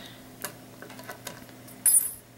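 Small embroidery scissors being handled over cotton floss: a few light clicks and ticks, then a short, bright metallic snip near the end as the blades go to the thread.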